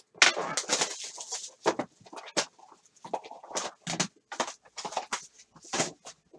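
A cardboard trading-card box and its plastic wrap being torn open by hand: a run of irregular crinkles and rips.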